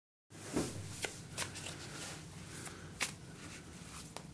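A tarot deck being shuffled by hand: quiet sliding of cards against each other, with a few sharp card taps.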